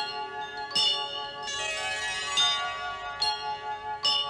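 Bell-like chime tones, struck about every 0.8 seconds, each ringing on and overlapping the next: a short musical chime interlude.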